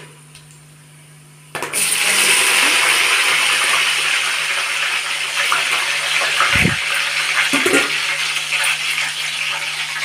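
Hot cooking oil in an aluminium pot sizzling loudly as green chillies are dropped into it with whole spices; the sizzle starts suddenly about a second and a half in and carries on steadily. A dull knock sounds near the middle.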